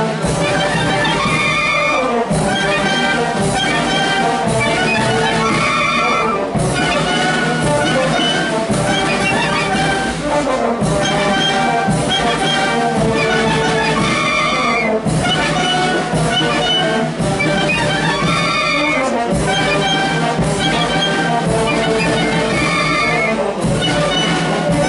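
Street wind band playing a tune together: clarinets, flutes and saxophones over trumpets and tubas. It is loud and steady, with a short phrase that ends and starts again about every four seconds.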